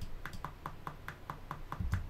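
GarageBand's software metronome clicking steadily at a fast tempo, about five even clicks a second.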